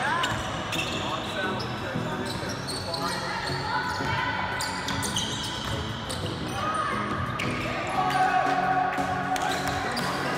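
Basketball game sounds on a hardwood gym court: a ball bouncing with repeated sharp strikes, and players' voices, under background music.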